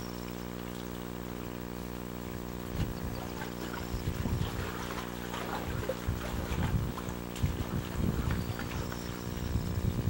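Wind gusting on the microphone from about three seconds in, over a steady low hum. Water is splashing faintly in a concrete trough as hands work in it.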